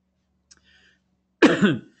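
A man clears his throat once, loudly and briefly, about one and a half seconds in.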